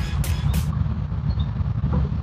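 Intro music cuts off about two-thirds of a second in, giving way to a loud, uneven low rumble of outdoor background noise.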